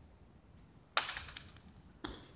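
Hard jai alai pelota striking the fronton with one sharp crack about a second in, followed by a short echo off the walls; another crack starts right at the end.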